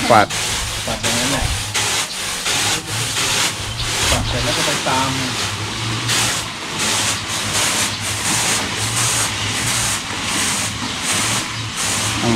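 Freshly milled rice being winnowed on flat round woven bamboo trays: the grain is tossed and shaken on the trays in a rhythmic swishing hiss, about three strokes a second, as the husks are separated from the rice.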